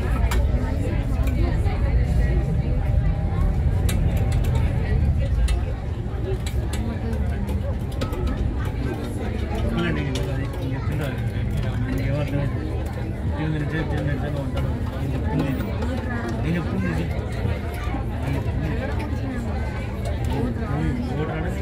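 Low steady rumble of a river cruise boat's engine heard from inside the cabin, with passengers talking indistinctly over it; the rumble drops in level about five and a half seconds in.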